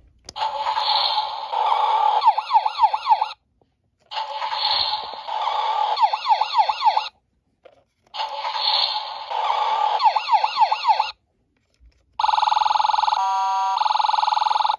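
Electronic sound effects from a Toy State Road Rippers toy fire truck, played through its replacement speaker: three bursts of about three seconds each, each beginning with a noisy rush and ending in a fast-warbling siren. About twelve seconds in, a steady buzzing tone starts.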